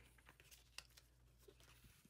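Near silence, with a few faint, scattered crackles of a clear plastic sticker being peeled off a paper planner page.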